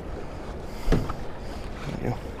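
Steady noise of river water and wind around an open boat, with a single dull knock about a second in.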